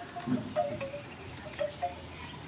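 Kitchen scissors snipping through a raw fish, a few sharp clicks, over soft scattered chime-like notes.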